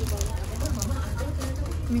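Quiet talking over a steady low hum, with faint rustling of plastic instant-noodle packets being handled.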